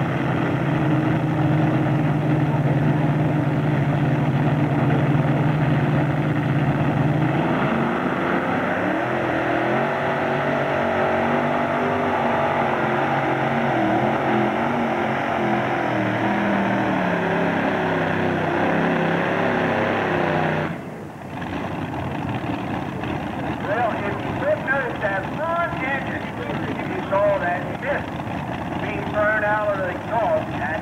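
Multi-engine modified pulling tractor running steadily at the start line, then opening up about seven seconds in and pulling at high revs for around thirteen seconds, its pitch stepping up and down. The engines cut off suddenly about two-thirds of the way through, and voices follow.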